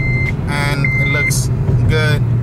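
Honda Civic Si's 2.0-litre four-cylinder engine pulling at about 3,500 rpm in third gear, heard as a steady drone inside the cabin. A high electronic chime beeps about once a second over it.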